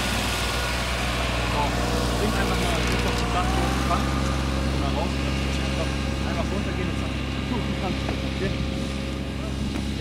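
Ride-on lawn mower engine running steadily as the mower drives across the pitch, a continuous low hum.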